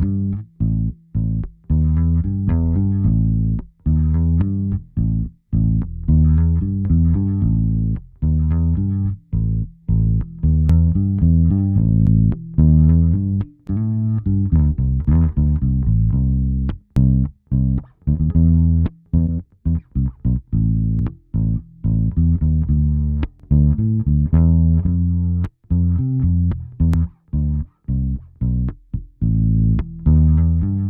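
G&L electric bass recorded direct (DI) playing a line of plucked notes with short gaps between them, heard through GarageBand's AU Multiband Compressor on its Analog preset. The compressor only lightly shaves off the note peaks.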